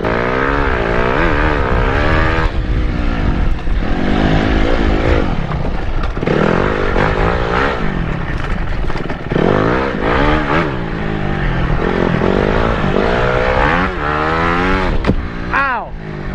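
Dirt bike engine revving up and easing off again and again as the bike is ridden hard along a rough trail, heard close with rumbling wind noise. A couple of sharp knocks come near the end.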